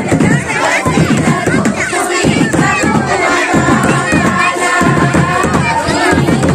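Group of Santal women singing a Sohrai dance song together, many high voices at once with crowd voices around them, steady and loud throughout.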